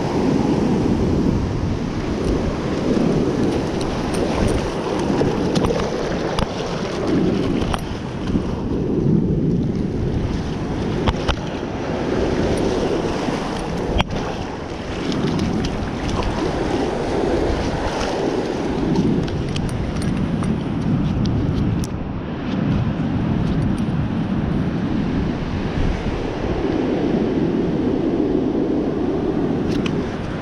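Surf breaking and washing up a sandy beach, with wind noise on the microphone, a steady hiss that swells and eases every few seconds.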